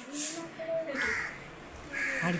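A crow cawing about a second in, over a person's voice.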